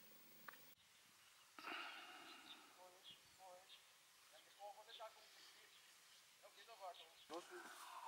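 Near silence, with faint, far-off human voices now and then.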